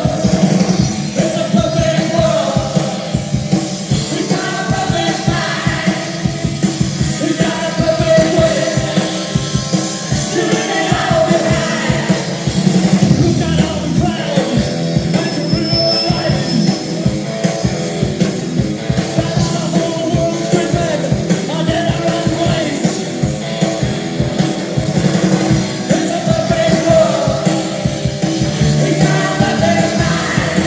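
Live rock band playing, with a fast, steady drum beat, guitars and singing.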